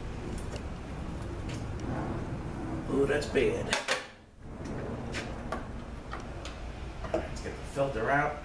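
Light knocks and clatter of metal transmission parts being handled on a workbench as the oil pan is lifted off and set aside, with a brief drop-out in the sound about four seconds in.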